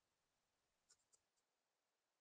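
Near silence, with a few very faint short ticks about a second in.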